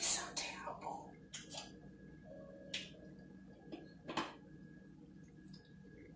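Faint dialogue from a TV drama playing through a tablet's small speaker: low, quiet voices with a few brief sharp sounds.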